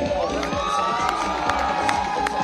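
Crowd cheering and shouting, with many voices whooping at once. A few sharp hand claps stand out about three-quarters of a second in and near the end.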